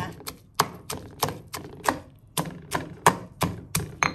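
Stone pestle pounding red chillies and garlic in a granite mortar (Thai krok): about a dozen sharp strikes at roughly three a second, coarsely crushing them.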